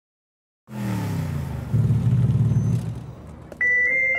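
Forklift engine running with a steady low hum. It gets louder about a second in and fades after three seconds. Near the end a steady high tone starts.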